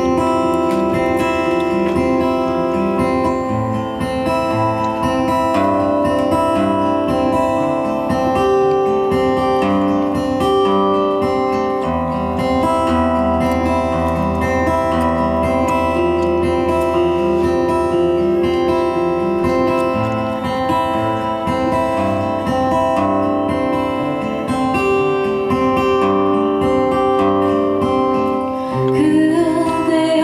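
Steel-string acoustic guitar playing an instrumental passage alone, plucked notes ringing over a steady bass. Near the end a woman's voice comes back in singing.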